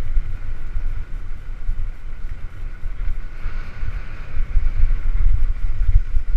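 Wind buffeting a helmet-mounted camera's microphone as a mountain bike rides down a dirt forest trail: a loud, uneven low rumble with a fainter steady hiss above it.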